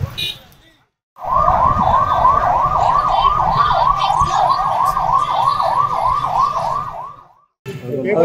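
Emergency vehicle siren in a fast yelp, its pitch rising and falling about three times a second for about six seconds over a low rumble. It starts suddenly about a second in and cuts off abruptly near the end.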